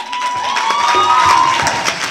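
An audience clapping and cheering, with one voice holding a long, high cheer through most of it before it drops away.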